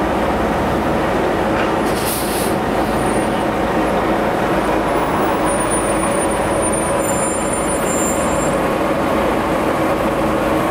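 Articulated city bus running steadily as it rolls slowly past at close range. There is a short hiss of air about two seconds in, and a faint high-pitched squeal in the second half.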